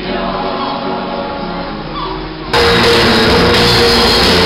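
A choir singing together. About two and a half seconds in it cuts off abruptly to much louder music.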